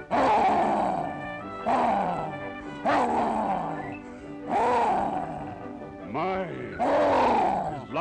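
Cartoon lion roars voiced by a person: about six loud, wavering roars in turn, one every second or so, over band music.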